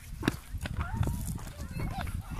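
Voices of a group of hikers talking and calling out, with footsteps on a dirt trail as irregular clicks.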